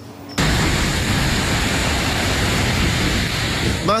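Floodwater from an overflowing river rushing through a breach in earthen banks: a loud, steady rush of water that starts suddenly about half a second in and cuts off near the end as a voice begins.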